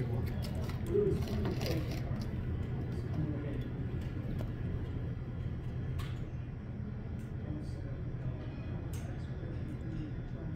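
Curling rink background: a steady low hum with faint voices in the hall. Two sharp clacks sound about six and nine seconds in.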